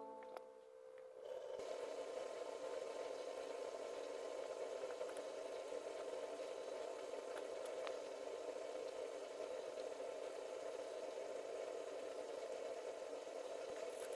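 Background guitar music dies away in the first second, then a faint, steady noise with a few soft ticks.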